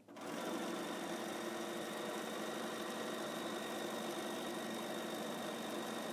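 Bernina sewing machine stitching fabric, starting up abruptly and running at an even, steady speed.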